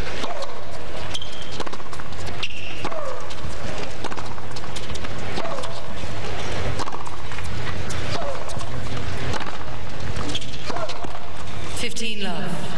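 Tennis rally on a hard court: a series of sharp knocks from racket strikes and ball bounces, with short vocal sounds mixed in.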